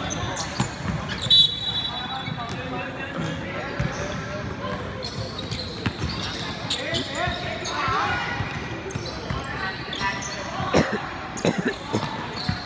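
Indoor basketball game: a basketball bouncing on a hardwood court, with sneakers squeaking briefly near the start and again about a second in, and players' and spectators' voices in a large hall.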